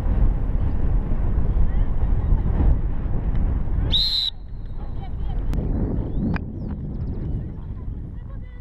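Wind rumbling on a helmet-mounted microphone, broken about four seconds in by one short, high-pitched blast of a polo umpire's whistle.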